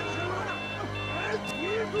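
Wristwatch alarm beeping, short two-pitch beeps about twice a second, played in reverse over reversed background voices. A sharp click comes about halfway through.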